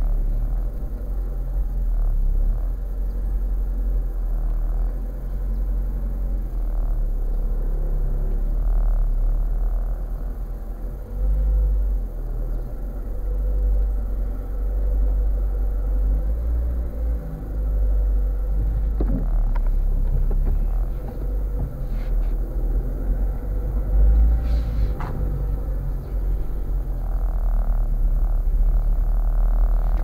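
A car's engine and road rumble heard from inside the cabin while driving, a steady deep rumble that swells and eases a little, with a few sharp clicks in the second half.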